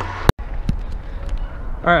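A sharp click and a split-second dropout near the start, then a steady low rumble of wind buffeting a handheld camera's microphone, with a few light clicks.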